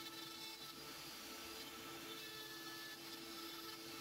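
Rotary carving tool spinning a Kutzall carbide taper burr against wood, a faint steady motor hum with a level tone as it feathers the cut.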